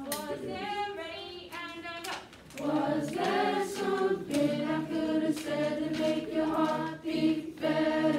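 A choir singing a line of a song together in held notes, with a short break about two seconds in.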